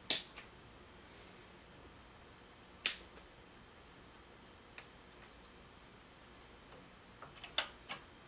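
Sharp clicks of front-panel switches on rack-mounted studio processors being pressed one unit at a time: a pair just after the start, a loud one about three seconds in, two fainter ones near five seconds, and a quick run of clicks near the end.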